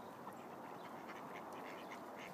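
A flock of mallards giving faint, scattered quacks.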